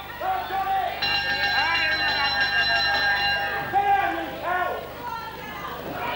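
Ring bell sounding for the end of a wrestling round: one steady ring, held for about two and a half seconds from about a second in, over a crowd shouting.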